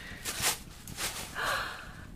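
A person's breathy gasps: a short intake of breath about half a second in, then a longer breathy exhale near the end.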